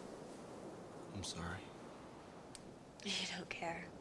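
Quiet, soft-spoken speech: two short phrases, one about a second in and one near the end, over faint room tone.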